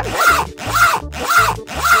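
Zipper on a soft fabric carrying case being pulled open in four quick strokes, about half a second apart.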